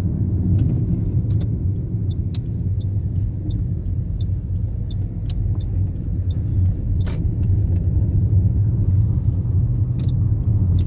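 Steady low road and engine rumble heard from inside a moving car's cabin, with a faint, regular ticking over it and a single short knock about seven seconds in.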